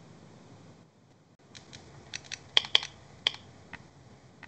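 Computer keyboard keys tapped in a quick, irregular run of about nine light clicks, starting about a second and a half in, loudest around the middle.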